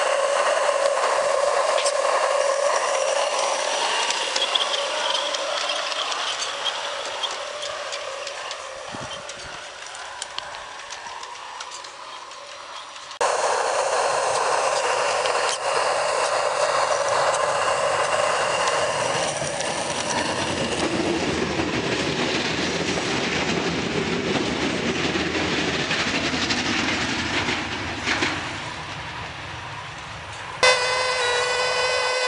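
G-scale garden-railway steam locomotive running on its track: a steady whine with fine clicking of wheels over the rails. It fades as the engine draws away, is close and loud again from about 13 seconds in, and drops away once more near the end.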